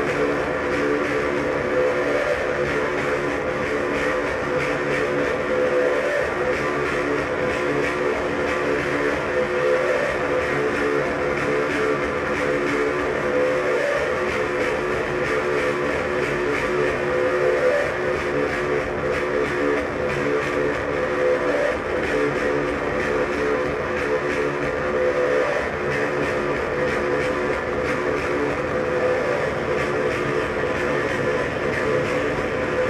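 Live death-industrial noise drone from electronics: layered held tones over a dense, rumbling, machine-like noise bed, steady in level with no beat.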